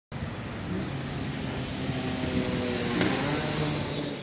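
A motor vehicle's engine running nearby over steady street traffic noise, with a short click about three seconds in.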